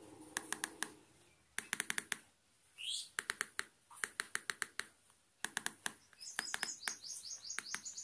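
Keys of a Jio Phone's keypad being pressed in quick multi-tap clusters of three to five short presses, each cluster picking one letter as a word is typed. A brief rising chirp comes about three seconds in, and a faint high twittering runs through the last two seconds.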